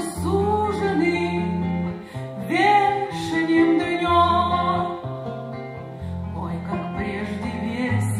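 Live singing with acoustic guitar accompaniment: a sung melody with held notes over plucked guitar chords, recorded on a dictaphone.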